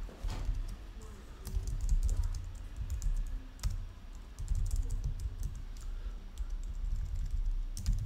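Computer keyboard typing: irregular runs of key clicks, with a steady low rumble underneath.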